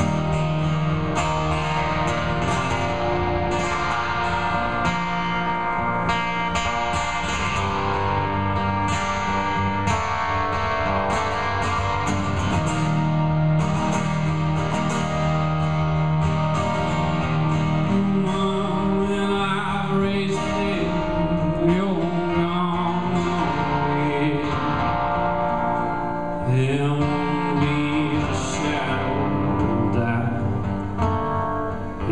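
Solo amplified acoustic guitar played live, slow chords picked and strummed and left ringing. Near the end a man's voice comes in singing over it.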